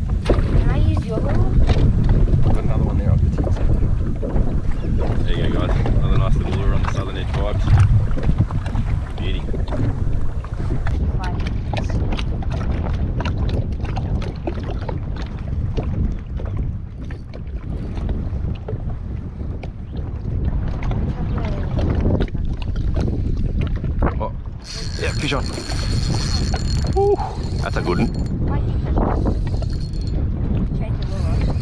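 Wind buffeting the kayak-mounted camera microphone as a steady low rumble, with small waves slapping and knocking against the plastic kayak hull.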